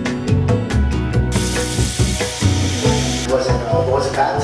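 Sage leaves sizzling as they fry in a pan, starting about a second in, over background music with a steady beat.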